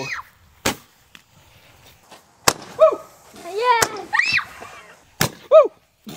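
A tipped-over Roman candle lying on the grass, firing: four sharp pops, about a second and a half apart, as it shoots out its stars. Short shouted exclamations come between the pops.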